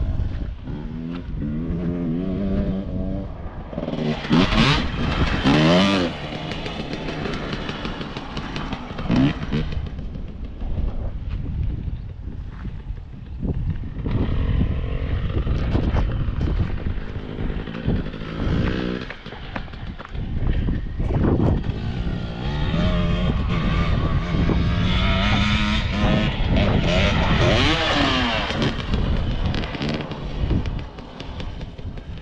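Dirt bikes running on a motocross track, their engines revving up and down again and again, loudest about five seconds in and again near the end, with wind buffeting the microphone.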